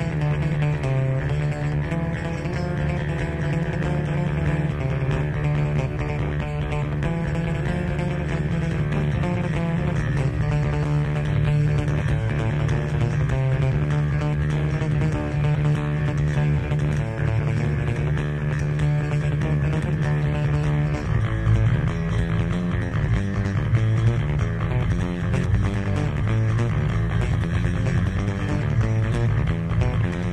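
Unaccompanied electric bass guitar solo: long held low notes, moving into a busier, shifting low line about twenty seconds in.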